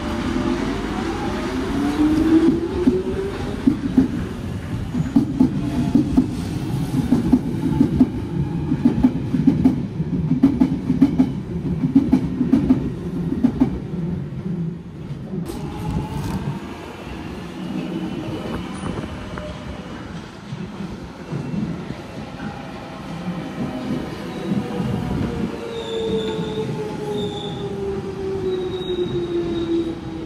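London Underground Jubilee line 1996-stock train pulling out, its traction motors whining up in pitch, then a regular rhythmic rumble of the wheels as it leaves. From about halfway another 1996-stock train runs in, its motor whine falling steadily in pitch as it brakes, with a few short high squeals near the end.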